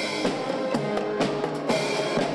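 A marching band playing, with snare and bass drums struck under held brass notes.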